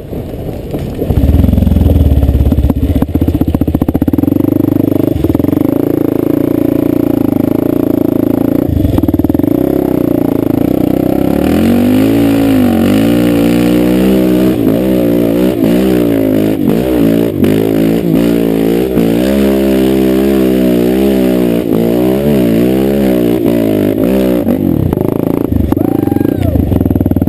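Dirt bike engine running loud and close. It picks up about a second in, then from about halfway its revs rise and fall over and over as the throttle is worked up a steep rocky climb.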